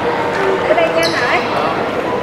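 People talking, with a single sharp knock near the middle.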